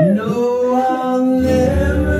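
Amateur voices singing together, holding long sustained notes.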